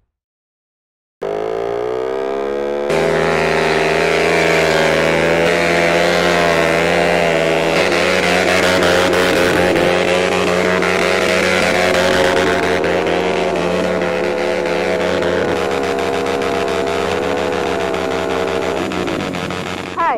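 KTM Duke single-cylinder motorcycle engine held at high revs, its pitch rising and falling as the rear tyre spins in a smoky burnout. It starts about a second in, gets louder about 3 seconds in, and cuts off suddenly near the end.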